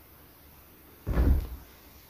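A single dull thump about a second in, lasting about half a second, against quiet room tone.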